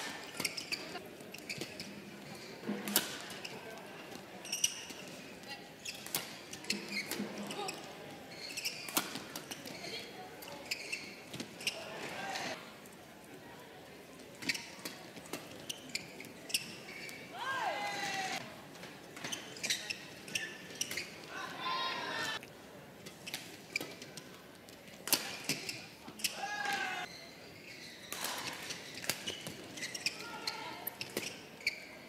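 Badminton rallies in an indoor hall: sharp cracks of rackets striking the shuttlecock, one after another, with the short squeal of shoes on the court surface a few times and a low crowd murmur underneath.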